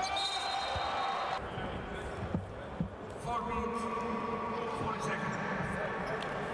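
Live basketball game sound in an indoor arena: players' voices and a basketball bouncing on the hardwood court, with two sharp knocks a little over two seconds in and held tones in the background.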